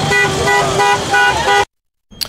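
Vehicle horns honking: a held horn note with short repeated toots over it. It cuts off abruptly near the end.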